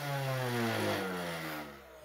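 Ryobi P20130 18-volt cordless string trimmer's electric motor spinning the trimmer head freely, then slowing and fading in the second half as it winds down. It is a test run after the wire that had wound into the head was removed, and the head spins again.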